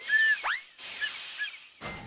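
Cartoon steam-engine whistle sound effect, blown but broken: a hiss of steam with odd squeaky chirps and honks instead of a proper peep.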